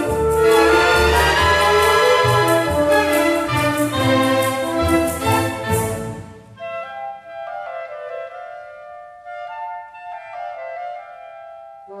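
Symphony orchestra playing: full and loud for about the first six seconds, then dropping suddenly to a quieter, sparser passage of a few held notes.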